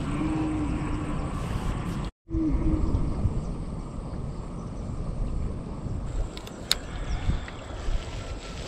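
Wind buffeting an action camera's microphone, a low uneven rumble. A short steady hum sounds in the first few seconds, the sound cuts out for an instant about two seconds in, and there is a sharp click near the end.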